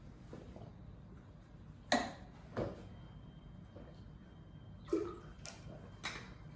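Quiet kitchen room tone with a few faint knocks and clicks from handling a shot bottle and a water bottle, the last one near the end as the bottle cap is twisted.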